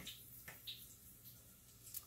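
Faint wet squishes and light clicks at uneven intervals as a hand dips breaded seafood into beaten egg in a stainless steel bowl, over a low steady hum.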